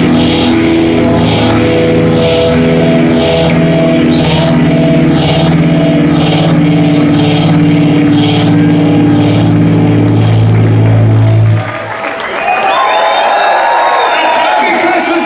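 Punk rock band playing live at full volume, ringing out held bass and guitar chords with cymbal crashes about twice a second, then cutting off sharply near the end. The crowd shouts and cheers after the stop.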